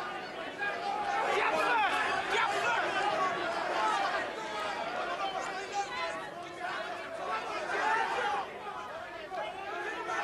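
Boxing crowd in a large hall, many voices shouting and calling out at once in a steady, overlapping din.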